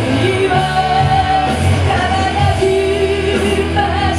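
Live rock band: a woman sings long held notes over a Zemaitis electric guitar and the band's low, steady accompaniment.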